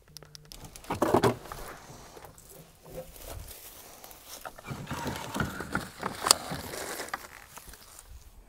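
Rustling and handling noises with scattered clicks and knocks, louder about a second in and again for a stretch past the middle.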